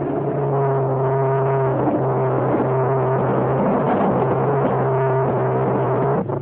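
A steady machine-like hum: a low drone and a higher steady tone over a hiss, the low drone breaking off briefly about two seconds in and again near three and a half seconds.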